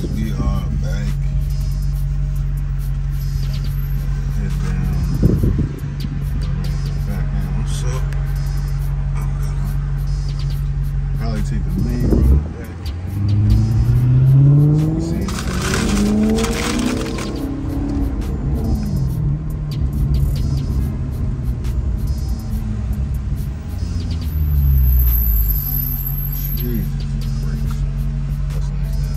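Maserati GranTurismo engine heard from inside the cabin: a steady low drone while cruising, then about halfway through the revs climb hard and fall away as it eases off, with a shorter rise in revs near the end.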